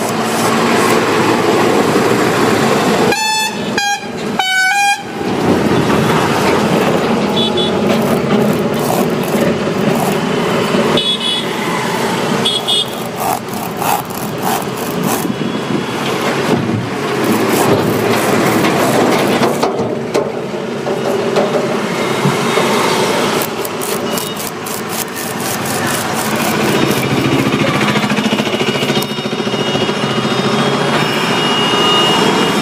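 A knife shaving and slicing layers of rubber off a piece of old tyre, a continuous rough scraping. A horn sounds in several short toots about three seconds in.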